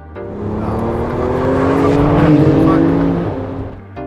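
Porsche 911 GT2 RS twin-turbo flat-six accelerating past, its engine note rising steadily in pitch as it swells to a loud peak a little past the middle and then fades away.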